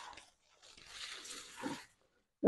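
Faint rustling of tall grass and leaves as a person pushes through the undergrowth, with a brief voice-like sound near the end.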